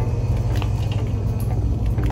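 Steady low rumble of indoor shop background noise, with a few faint clicks.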